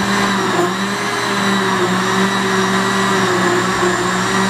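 Countertop electric blender running steadily, its motor humming as the blades churn a liquid mix of milk and yogurt.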